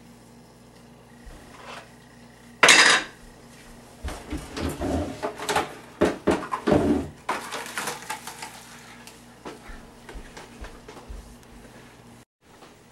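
Kitchenware being handled: one loud sudden clatter about three seconds in, then several seconds of busy, irregular clanking and knocking of dishes and pots that thins out to a few scattered knocks.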